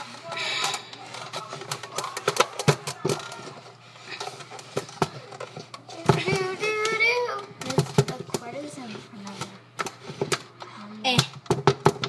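Scattered knocks and clatter of a blender jar and its lid being handled after the blender is switched off, with a child's voice breaking in briefly about halfway through and again near the end.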